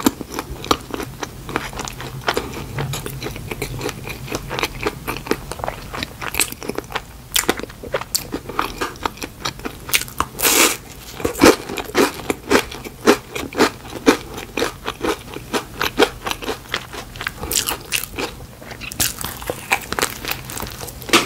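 Close-miked mouth sounds of a person biting and chewing small chocolate-coated donut pieces with a cream topping: a steady run of small clicks from chewing, a loud bite about halfway through, and frequent sharper bites after it.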